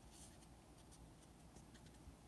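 Near silence with faint paper rustling and small ticks: the pages of a book being leafed through by hand.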